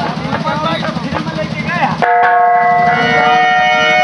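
Live stage-show sound through a PA: a performer's voice over a fast, dense drum roll. About halfway through, the drumming and voice stop abruptly and a steady held chord from a keyboard-type instrument sounds in their place.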